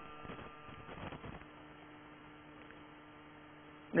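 Faint steady electrical hum in a pause in a man's speech, with a few faint soft sounds in the first second or so; he starts speaking again at the very end.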